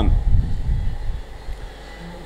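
A low, muffled rumble picked up by a lectern microphone, strongest in the first second and fading away.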